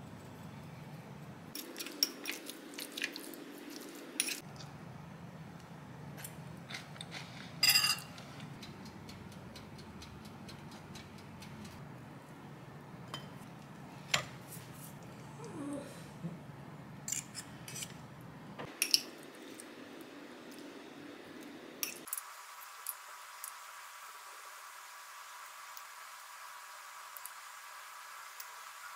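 Metal spoon clinking and scraping against a ceramic bowl and plates, a scatter of light, irregular clinks and knocks over a faint steady hum, the loudest clatter about eight seconds in.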